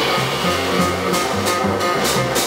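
A jazz quartet playing: bassoon and alto saxophone sounding together over double bass and drums. Cymbal strokes come thicker toward the end.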